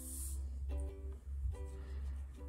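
Background music of gently plucked notes on a ukulele-like string instrument, a new note about every second, over a steady low hum.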